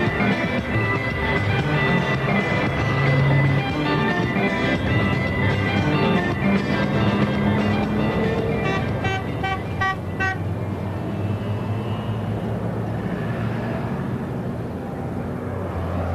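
Instrumental Congolese-style rhumba band music, with bright, quick guitar notes over bass and drums. About ten seconds in the guitar notes stop and a steady, duller sound carries on to the end.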